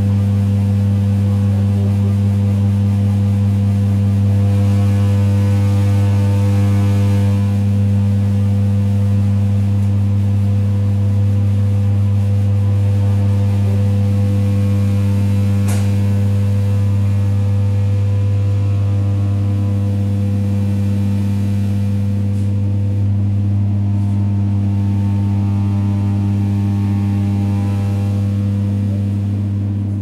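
Interior sound of an ЭД9Э electric multiple unit under way: a loud, steady electrical hum with a low and a higher tone over the running noise of the train. A single sharp click about halfway through.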